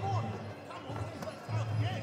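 Shouting voices around a Muay Thai ring over background music, with one sharp smack of a gloved punch landing a little over a second in.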